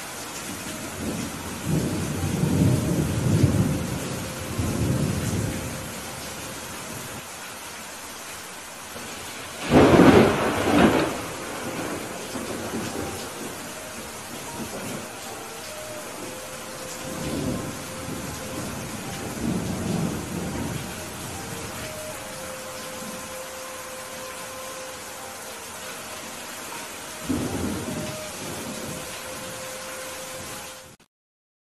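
Heavy rain falling steadily, with thunder: low rolling rumbles in the first few seconds, a loud sharp thunderclap about ten seconds in, and several more rumbles later, the last near the end.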